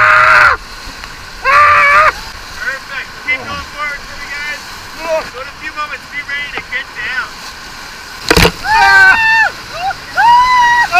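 Rafters screaming and whooping while running a whitewater rapid, over the steady rush of the river. Two loud, long screams open it, then many shorter, fainter yells; about eight seconds in a sudden hit sounds, and loud yelling breaks out again.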